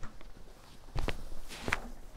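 Soft knocks and shuffling from a person moving close to the camera and handling it, with a double knock about a second in and another shortly before the end.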